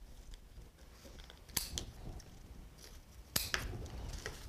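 Scissors snipping individual leaves off a stem of artificial silk foliage: two short, sharp snips, one about a second and a half in and another about two seconds later.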